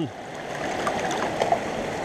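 Shallow, rocky stream running steadily, water rushing over stones and through a gold sluice box set in the current, an even rush with a couple of faint ticks.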